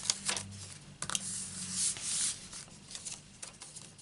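Paper being lifted and handled on a craft mat: a few light taps, then a sliding rustle of paper a little under two seconds in.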